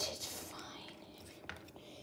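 Faint breathy whisper from a person, with a single light click about a second and a half in.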